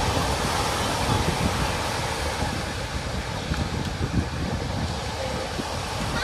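Ocean surf washing onto the beach as a steady rushing noise, with wind rumbling on the microphone.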